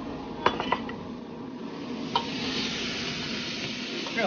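A metal spatula clinks against a wok a few times, then a loud sizzling hiss builds from about two seconds in as green beans stir-fry in the hot wok.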